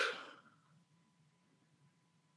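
The breathy end of a spoken count word fades out within the first half second, then near silence: faint room tone with a thin steady hum.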